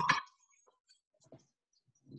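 Metal tongs clinking against a skillet as sliced peppers and onions are turned: one sharp, ringing clink at the start, then a few faint ticks about a second and a half in.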